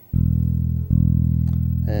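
Electric bass guitar playing two open low E notes, plucked fingerstyle: one just after the start and a second just under a second later, each ringing on.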